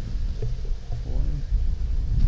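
Low rumble of wind and handling noise on a hand-held camera's microphone as it is carried across grass. A short hummed voice sound comes about a second in.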